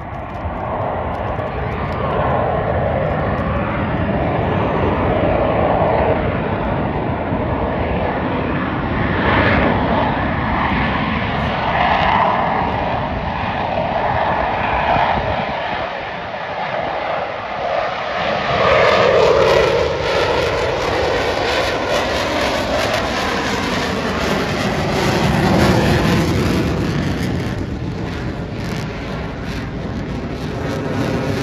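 Blue Angels F/A-18 Hornet fighter jets flying past, a loud, continuous jet engine sound that swells and fades as they pass. It is loudest a little under two-thirds of the way in and again near the end, with the sound sliding down in pitch after the loudest pass.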